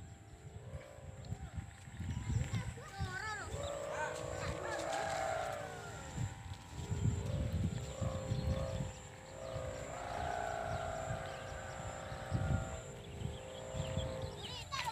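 Faint distant voices calling out, with gusts of wind rumbling on the microphone.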